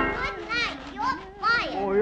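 A high-pitched cartoon voice vocalizing in several short swooping rises and falls, with no clear words, right after a musical passage cuts off.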